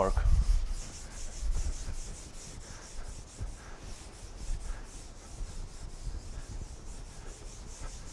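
A cloth rubbing chalk off a blackboard: a run of quick, repeated wiping strokes, a steady scratchy swishing.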